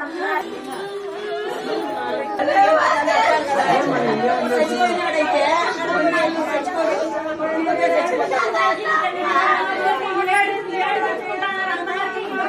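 Several women crying and lamenting aloud in mourning, their wailing voices overlapping without a break.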